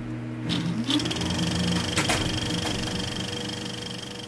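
Steady mechanical whirring with a fast clatter and a high whine, like a machine running, with a tone gliding upward in pitch about half a second in and a single click about two seconds in.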